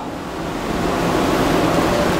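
A steady, even rushing noise with no speech over it, at about the same level as the surrounding talk.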